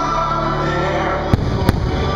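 Two firework shells bursting, two sharp bangs about a third of a second apart near the end, over the fireworks show's music.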